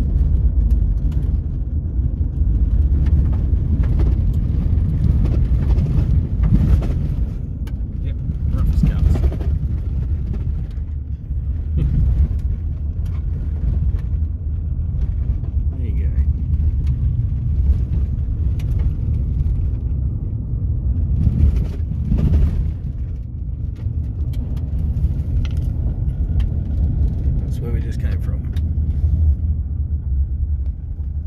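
Steady low rumble inside a car cabin as it drives over a rough dirt track, with strong wind buffeting the car and occasional knocks from the bumps.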